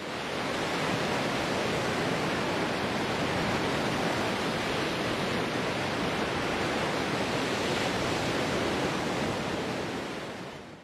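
Steady, even rushing noise, like surf or falling water, with no tune or beat. It swells in at the start and fades away near the end, laid under the logo intro.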